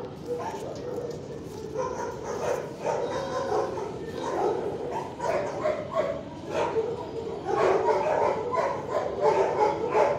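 Shelter dogs barking and yipping, one bark after another, growing louder over the last few seconds.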